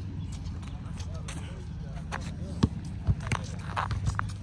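Outdoor basketball court ambience: faint distant voices and several separate sharp thuds of a basketball bouncing on asphalt, over a low steady rumble.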